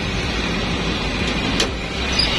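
Toyota Kijang Super engine idling steadily, with a single sharp click about one and a half seconds in as the bonnet is unlatched and raised.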